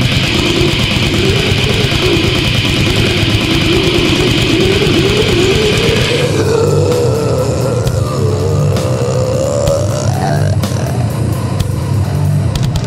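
Brutal death metal / goregrind recording: heavily distorted electric guitars and bass over fast, dense drumming. A wavering sustained tone climbs slowly in pitch through the passage, and the bright upper guitar wash thins out about halfway.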